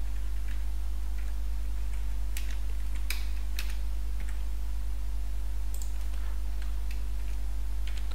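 Computer keyboard typing: scattered, irregular keystroke clicks with pauses between them, over a steady low electrical hum.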